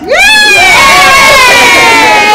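Several children cheering together in one long, loud, high-pitched shout as the birthday candles are blown out, the pitch slowly falling as it goes on.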